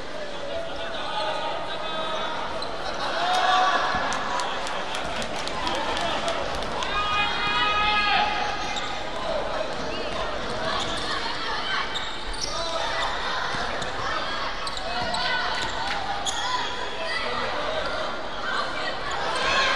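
A basketball bouncing on a hardwood gym floor during play, with sharp knocks in runs, mixed with children's voices calling out.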